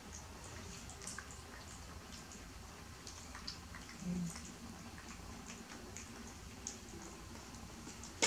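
Young macaques eating burger pieces off plastic plates: faint scattered clicks, ticks and soft squishy sounds of food being handled and chewed, with a brief low sound about four seconds in.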